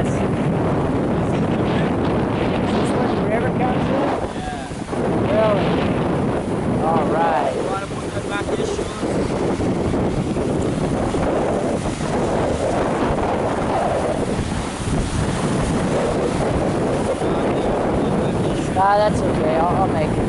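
Strong wind buffeting the microphone over the steady wash of sea surf, with a few brief snatches of voices.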